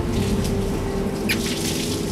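Seawater running through a hose into a plastic storage tank over a steady machinery hum, with one brief knock about a second in.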